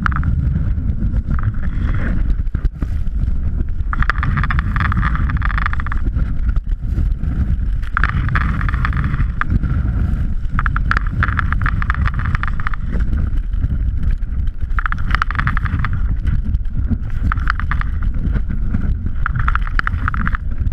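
Snowboard running over snow, heard from a camera mounted on the board: a constant low rumble of board vibration and wind on the microphone. A hissing scrape swells and fades every couple of seconds as the board's edge bites the snow in turns.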